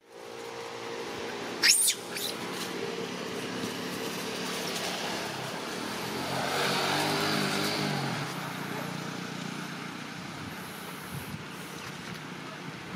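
A motor vehicle engine running steadily close by, growing louder around the middle and easing off after. A brief high-pitched squeal about two seconds in stands out as the loudest sound.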